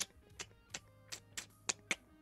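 A quick series of sharp clicks, about seven in two seconds at a fairly even pace, over a faint steady low hum.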